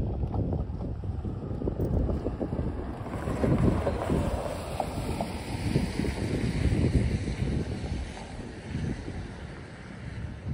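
Wind buffeting the microphone in irregular gusts, a low rumble, with a broader hiss that swells in the middle and fades again.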